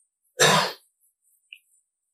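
A man clearing his throat once: a single short, loud burst about half a second in.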